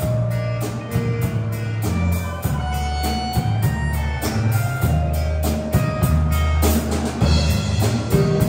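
Live band playing: a drum kit keeps a steady beat under low bass notes and held keyboard chords.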